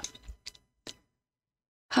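Two faint short clicks about half a second apart, followed by dead silence.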